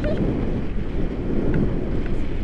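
Wind buffeting the microphone, a steady low rush with no break.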